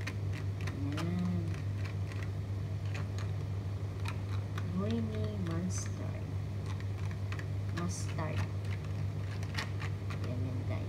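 A metal spoon clicking and scraping against a small glass jar as grainy mustard is scraped out of it, a run of irregular light clicks, over a steady low hum. A few short murmured voice sounds come in about a second in and again around five and eight seconds.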